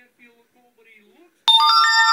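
A bright bell-like chime strikes suddenly about one and a half seconds in, several clear tones ringing together and holding.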